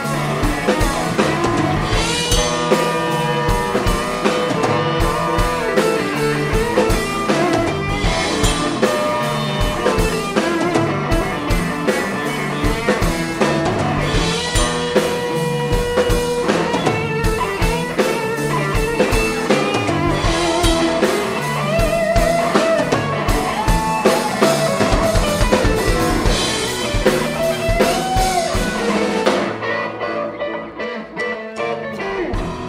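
Live blues-rock band playing an instrumental passage: electric guitar lead over drum kit and bass guitar, with no vocals.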